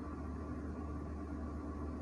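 Steady low electrical or machine hum with faint hiss, unchanging throughout, with a couple of faint steady tones above it.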